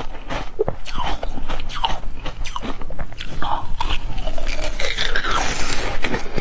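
Close-miked chewing and biting of a green cucumber-shaped treat: wet, crackly mouth clicks throughout, growing denser and louder near the end as a fresh bite is taken.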